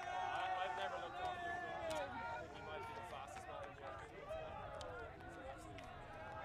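Faint, overlapping voices of players calling out and chattering across an outdoor field, with a few small sharp clicks.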